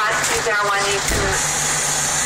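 Rescue truck's engine running with a steady low hum, under a voice for about the first second. A low thump comes a little after a second in, followed by a steady hiss.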